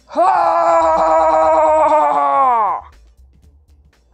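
A woman's long, loud power-up yell, one held note of about two and a half seconds that drops in pitch as it trails off, a mock shout of gathering strength, over background music.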